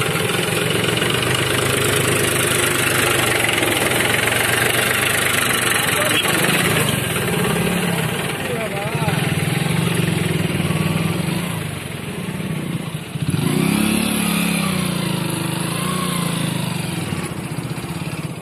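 A motorcycle engine running as it rides over a rough sandy track, passing close by a Mahindra B 275 DI tractor's running diesel engine. The noise is steady, with a short dip in level about two-thirds of the way through.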